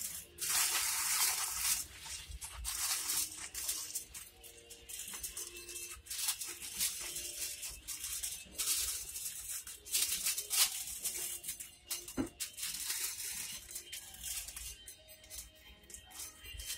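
Aluminium foil crinkling in short, repeated spurts as it is folded and crimped over a pan, with faint music in the background.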